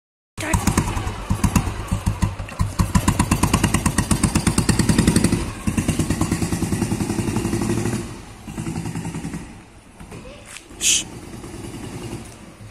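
Old Royal Enfield Bullet's single-cylinder engine running through a Madras-quality silencer, its exhaust beating in a loud, even pulse. About eight seconds in the bike rides away and the beat fades with distance.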